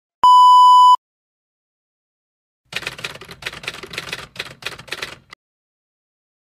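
A steady test-tone beep, the kind played over TV colour bars, lasting under a second, followed after a gap by a typewriter keystroke sound effect: a quick run of clacks, about four a second for two and a half seconds, ending with a last single click.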